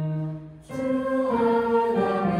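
A mixed high school choir singing the school alma mater. A held chord fades out about half a second in, and after a short break the voices come back in, fuller and brighter, on new notes.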